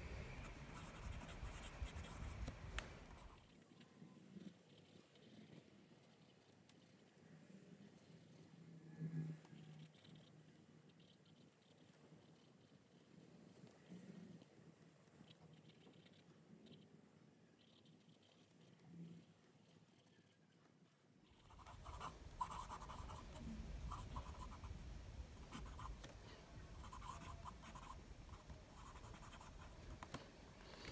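Pelikan M805 fountain pen's 18k gold medium nib writing on notebook paper: a faint sound of the nib gliding across the page, smooth with a little feedback but not scratchy. It grows fainter through the middle stretch.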